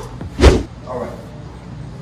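A single heavy thump about half a second in, as a person shifts their body on an exercise mat laid on a concrete floor.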